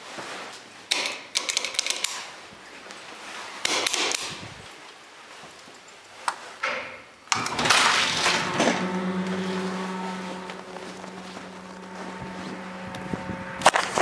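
Roped hydraulic elevator: clicks and knocks from its doors, then about seven seconds in its machinery starts with a sudden rush and settles into a steady low hum. A sharp clunk comes near the end.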